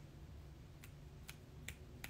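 Near silence with a low room hum and three faint, sharp clicks about half a second apart.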